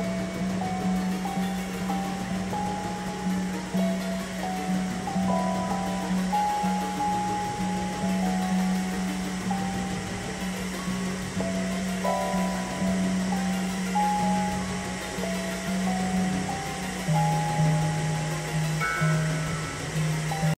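Experimental synthesizer music: a steady low drone that drops to a lower pitch near the end, under a wandering line of short, higher notes, over a constant hiss-like noise bed.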